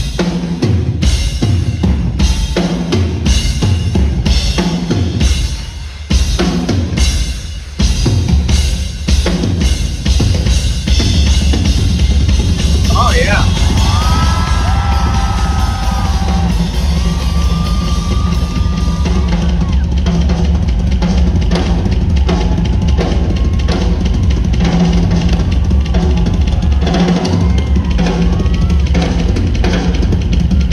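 Live rock drum solo on a four-piece drum kit, heard in an audience recording of the concert: heavy, spaced bass drum and snare hits at first, then from about ten seconds in a fast, dense, steady groove.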